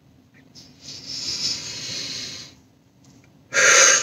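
A person taking a long deep breath lasting about two seconds, then a shorter, louder breath near the end.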